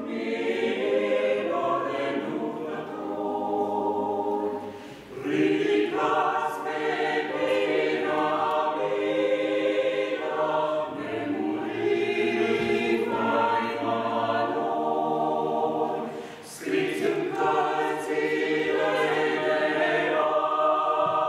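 A small mixed choir of men's and women's voices singing a cappella, sustained chords in phrases with brief breaks about five seconds in and again near the end.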